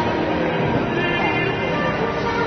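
Music playing over a basketball hall's loudspeakers during a timeout.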